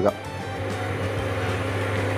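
Onions and spice powder frying in a pan: a steady, even sizzle that grows slightly louder, with a low steady hum underneath.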